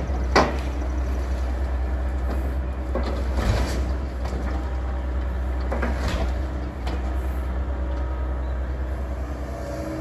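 John Deere excavator's diesel engine running steadily while it loads demolition debris, with several crashes and clunks of wood and rubble hitting the steel roll-off dumpster and the pile. The loudest crash comes just after the start, with others about three and a half and six seconds in.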